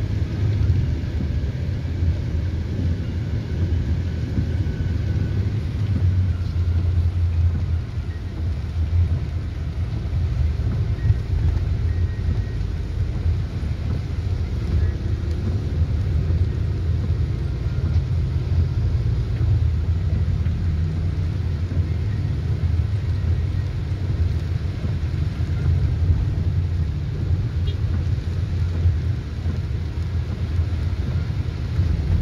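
Steady low rumble of a vehicle's engine and tyres on a wet road, heard from inside the cabin while driving.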